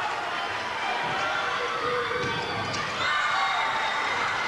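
Crowd din in an indoor basketball stadium during play: many voices shouting and cheering together. It swells a little about three seconds in.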